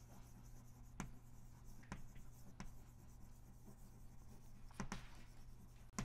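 Chalk writing on a blackboard: faint, scattered taps and scratches of chalk strokes, with a few sharper taps.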